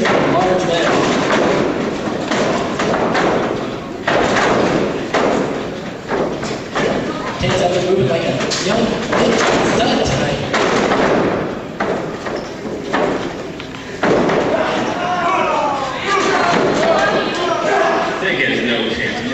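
Repeated thuds and slams of wrestlers' bodies hitting the ring canvas, with people's voices talking and calling out over them, on a rough handheld-camcorder recording.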